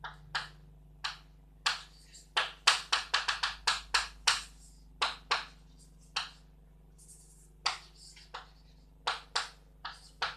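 Chalk tapping and scraping on a blackboard as math symbols are written: irregular short, sharp strokes, with a quick run of them from about two to four and a half seconds in.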